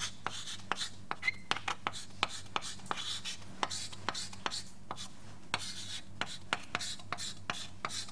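Handwriting: irregular scratching strokes and sharp little taps, several a second, over a steady low electrical hum.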